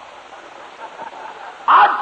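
Steady background hiss of an old sermon recording during a pause in the preaching, with a man's voice starting again near the end.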